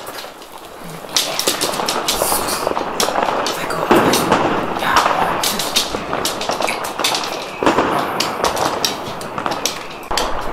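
Recording of firecrackers and fireworks played through a small portable speaker as noise-desensitisation training for a dog: dense crackling with sharp bangs, louder bursts about four, five and eight seconds in.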